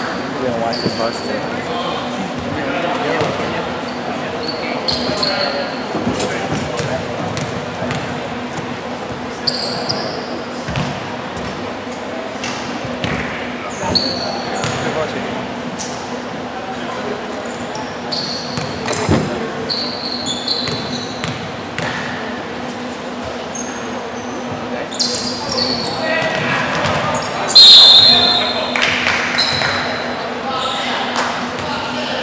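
Basketball game in a large echoing gym: sneakers squeak on the hardwood court, a ball bounces and background voices chatter, with a loud burst near the end.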